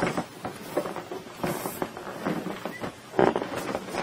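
Rubber helium balloon being handled at the mouth, with small clicks and rustles and a brief hiss of gas from its neck about one and a half seconds in, and another short burst a little after three seconds.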